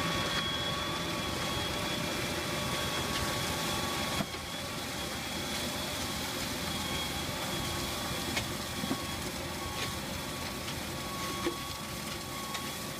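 Tractor-mounted verge grader running steadily as it cuts a road shoulder, with a steady high whine over the engine noise and a brief break about four seconds in.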